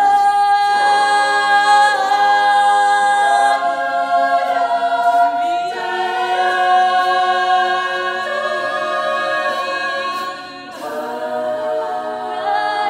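Women's a cappella group singing live: a solo voice over long sustained chords from the backing singers. The chord changes about six seconds in, and the sound drops briefly near the end before the voices come back in.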